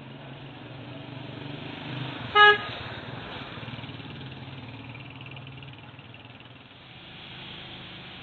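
Street traffic with a steady low engine hum, and a single short vehicle-horn toot about two and a half seconds in, the loudest sound.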